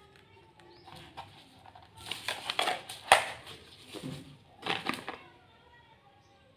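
Clicks and scraping of plastic as the back cover of a Nokia 110 4G keypad phone is opened and its battery taken out: a run of sharp clicks over about three seconds, with one loud snap near the middle.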